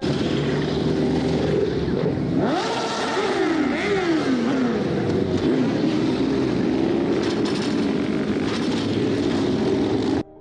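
A group of motorcycles riding off together, many engines running and revving at once. A couple of seconds in, one bike's engine note rises and then falls away as it passes close by.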